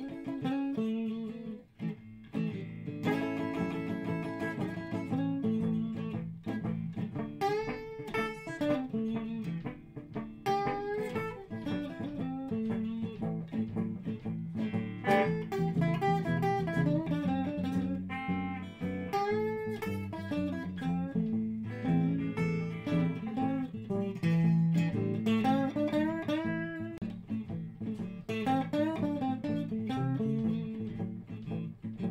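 Electric blues band playing an instrumental passage: a guitar lead with bent notes over a steady low bass line.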